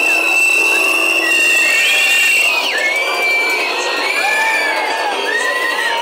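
A loud protest crowd shouting and whistling, with one long high whistle held for the first couple of seconds, then several shorter rising-and-falling whistles over the din of voices.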